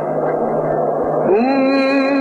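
Old, narrow-sounding recording of a male Quran reciter: a steady mains hum under a noisy, muffled background. About a second and a half in, the reciter's voice swoops up into a long held note of melodic recitation.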